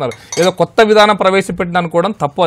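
A man speaking continuously in a TV studio discussion, Telugu mixed with English words.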